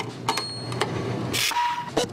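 Button clicks on an electronic radon monitor, with a short high-pitched beep, a brief hiss, and then a lower beep near the end as its paper-strip printer starts.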